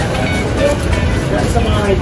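Steady roadside traffic rumble with indistinct voices of people close by.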